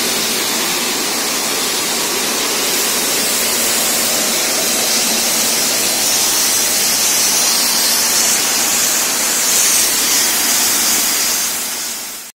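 Borewell drilling rig at work, a loud steady rush and hiss of water and slurry being blown out of the bore; the hiss grows brighter about halfway through.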